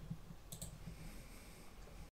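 A faint computer mouse click, a quick double tick about half a second in, over low room hiss.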